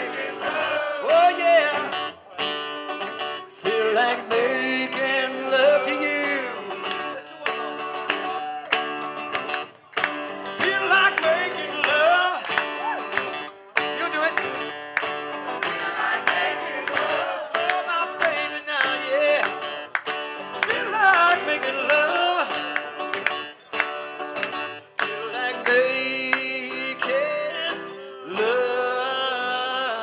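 Two acoustic guitars played live, strummed chords with picked melody lines, and a man's voice singing along at times.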